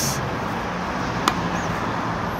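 A single sharp crack of a tennis racket's strings striking a ball about a second in, a practice serve hit with a tilted racket face, over a steady background hum of traffic.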